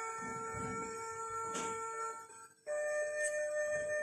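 LeapFrog Good Night Scout musical book playing its electronic tune: a held note fades out about two seconds in, with a short click before it, then a new steady chime-like tone starts shortly before three seconds.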